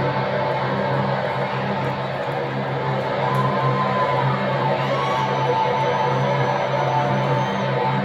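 Live metal band's amplified electric guitar and bass holding long, ringing notes, with no steady drum beat.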